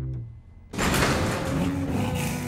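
Cartoon sound effect of a spaceship being struck: a sudden loud crash less than a second in, then a continuous noisy rumble with background music underneath.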